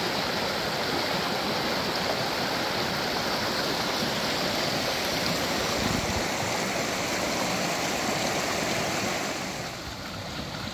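Creek water running over boulders and through small riffles: a steady rush and gurgle that drops a little in level near the end.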